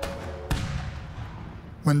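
A single gunshot about half a second in, sharp, with a long fading echo, over a faint held note of background music.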